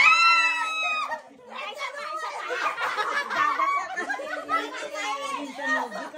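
A group of people talking excitedly over one another in a small room, opening with one voice holding a high shout for about a second.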